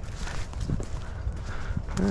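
Footsteps crunching and rustling through dry fallen leaves and brush, in an uneven walking rhythm over a low steady rumble.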